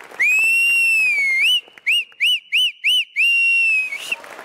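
Loud two-finger whistle blown close to a handheld microphone: a long high held note, then four short rising-and-falling whistles, then another long held note near the end.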